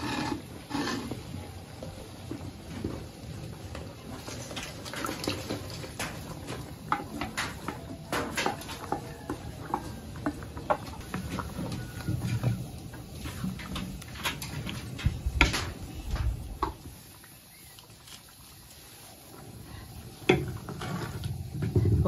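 Irregular clicks, knocks and scrapes of a spoon against clay pots as thick chipotle sauce is added to shrimp in a clay cazuela and stirred in, with a quieter lull near the end.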